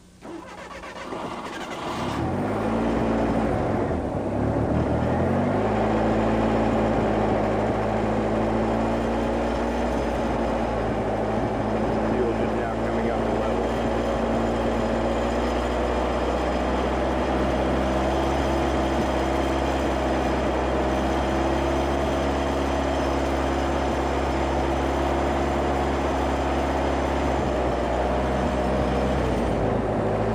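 Ford 2300 cc four-cylinder engine running on a Pantone GEET fuel processor, starting up: it catches about two seconds in, its revs climb and dip, and by about six seconds it settles into a steady idle.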